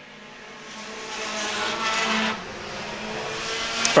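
Pure Stock race cars' engines at speed on the oval, several running together, growing louder over the first two seconds and then dropping away suddenly a little past two seconds in.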